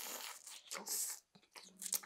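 Raw oysters being slurped from the half shell: short wet sucking bursts in the first second or so, then a few small mouth clicks and smacks near the end.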